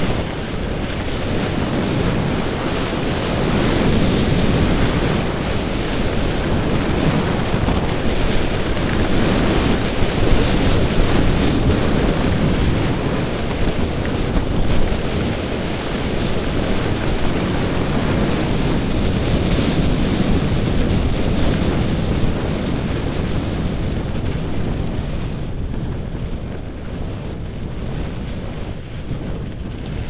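Wind rushing over the microphone of a skier's camera during a downhill run, with skis sliding over packed snow; a steady loud rush that eases somewhat near the end as the run slows.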